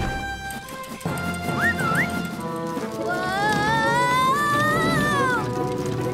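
Background music with a steady melody, over which a wordless voice glides up for about two seconds and then falls away, starting about three seconds in.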